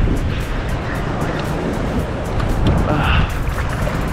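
Wind buffeting a kayak-mounted camera's microphone with a steady low rumble, and choppy saltwater sloshing against the kayak, with music running underneath.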